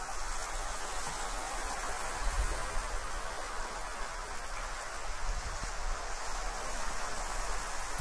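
Steady, even hiss of surf washing on a beach, with a faint low rumble underneath.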